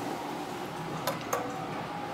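Two sharp clicks about a third of a second apart, about a second in, as an Otis elevator's round hall call button is pressed and lights up, over steady lobby background noise.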